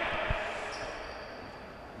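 Quiet sports-hall ambience during a stoppage in play, with one soft low thud about a third of a second in and a faint steady high tone from just under a second in.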